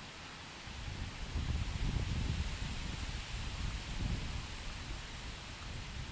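Wind buffeting the microphone: an uneven low rumble swells about a second in, peaks twice and then eases, over a steady outdoor hiss.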